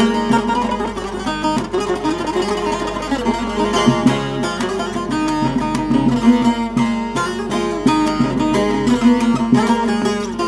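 Diyar Saz carved-bowl (oyma) long-neck bağlama played with a plectrum: a fast picked melody over a steady ringing drone note.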